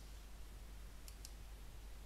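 Faint computer clicks as a presentation slide is advanced: one click at the start, then a quick pair about a second in, over a low steady hum.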